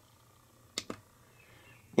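A push button on a Blue Sky Energy Solar Boost 3000i solar charge controller pressed once, giving a quick double click of press and release about a second in.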